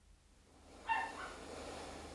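A pet's brief high-pitched whine about a second in, over faint room tone.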